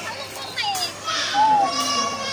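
A woman's high-pitched squealing laughter, a few short cries that rise and fall in pitch.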